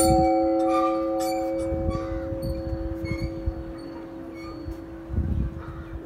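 Large hanging temple bell ringing out after a strike, its several steady tones fading slowly. Faint small clinks sound over it, and there is a low rumble about five seconds in.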